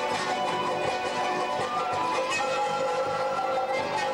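Live Bolivian folk ensemble playing: charangos and guitar strumming under wind instruments that hold long melody notes, with a large drum beneath.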